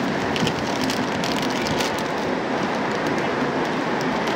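Plastic diaper-pack wrapper crinkling and tearing as it is pulled open by hand, in short crackles over a steady wash of outdoor background noise.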